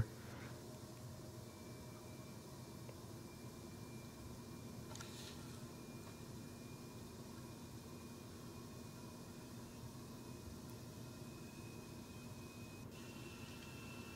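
Faint steady hum and hiss with a thin high whine that steps up slightly in pitch near the end.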